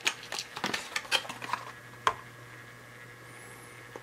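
Light clicks and taps of a Matchbox toy-car box and its contents being handled and opened, bunched in the first two seconds with one sharper click about two seconds in, after which only a faint steady hum remains.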